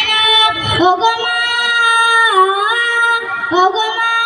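A girl singing a Bengali song solo into a microphone through a PA system, holding long notes that bend down and back up twice.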